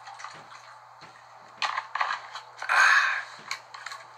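A person drinking from a plastic water bottle: after a quiet start come short clicks and gulps about halfway through and a louder noisy burst near the end, with the plastic crinkling.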